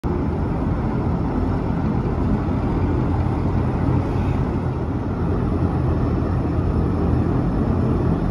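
Steady low rumble of a large passenger-car ferry's engines as it manoeuvres in to berth.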